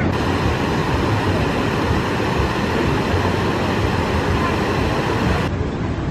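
Steady outdoor ambient noise with a strong low rumble and no distinct events.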